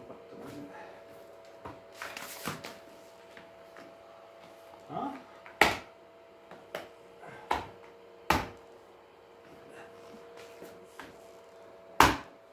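Handling noise from assembling a DXRacer Tank gaming chair: irregular sharp clicks and knocks of hard chair parts being pushed to snap into place, with a rustling scrape early on and the loudest knocks about five and a half seconds in, again near eight seconds, and at the very end.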